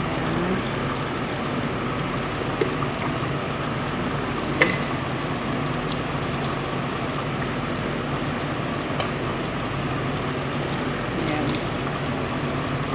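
Steady hiss with a low hum from stovetop cooking of chicken in a steel pot, with one sharp tap about four and a half seconds in.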